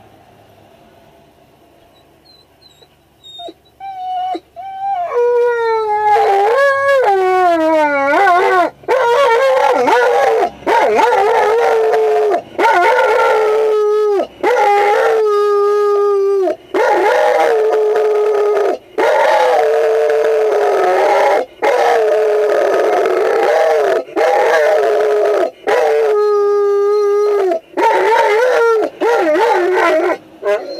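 A dog howling. Faint whines come first, then from about five seconds in a long run of loud, drawn-out howls, each a second or two long with brief breaks between; the first few slide down in pitch.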